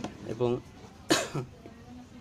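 A man's speech broken by a single short cough about a second in.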